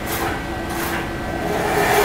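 Spyder II direct-to-screen inkjet printer running a bi-directional print pass, its print-head carriage shuttling with a rhythmic whirr that repeats about twice a second over a steady hum. It grows louder near the end.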